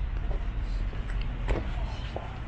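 Low, steady rumble of outdoor city ambience, with a single sharp click about one and a half seconds in.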